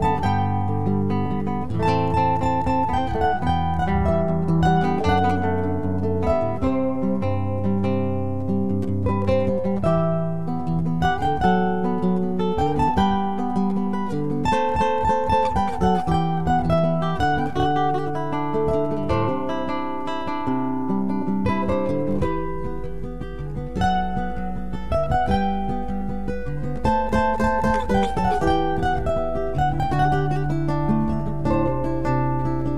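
Instrumental passage of a sung-poetry song: acoustic guitars playing plucked and strummed chords with no voice. About two-thirds of the way through, a low steady drone comes in underneath.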